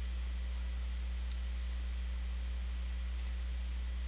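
Steady low hum with a couple of faint computer-mouse clicks, one about a second in and a quick pair near three seconds.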